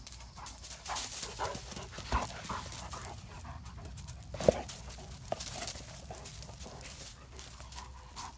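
Great Dane panting while moving over dry leaf litter, with many short crackles from the leaves underfoot. A single sharp knock comes about four and a half seconds in.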